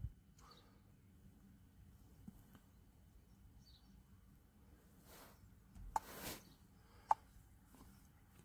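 Near silence with a few faint, brief handling noises: soft rustles around five and six seconds in, and a short sharp click just after seven.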